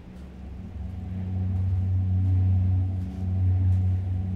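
Low rumbling drone, two steady deep tones, slowly swelling in loudness with a brief dip about three seconds in: the ambient sound-design intro of the track.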